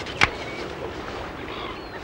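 Steady outdoor background noise at the sea's edge, with one sharp knock about a quarter of a second in.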